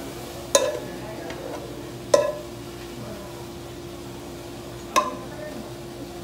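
A metal spoon scraping cooked sisig out of a cooking pan into a stainless steel tray, clinking sharply against the metal three times with a short ring each time, over a faint steady hum.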